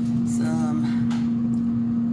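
Steady hum of a running oven, one low even pitch over a low drone.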